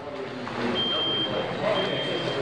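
Electronic beeping: a single high tone of about half a second, repeating roughly once a second, over a murmur of voices.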